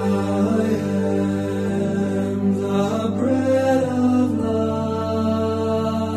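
Music: a male vocal quartet singing a gospel hymn in sustained close harmony, the voices holding long chords over a steady low note.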